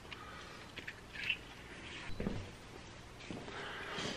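Faint handling noises of small parts being worked by hand: a few light clicks, a brief rustle about a second in and a soft knock a little after two seconds.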